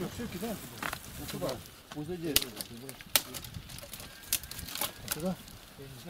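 Indistinct men's voices in short snatches, with several sharp knocks or clicks scattered among them.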